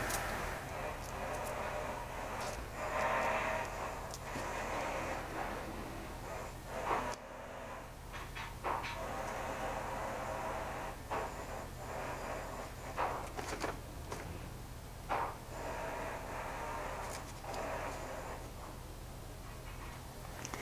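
Faint handling sounds of gloved hands coating a metal exhaust manifold gasket with exhaust paste: soft rustles and a few light clicks and taps, over a steady low hum.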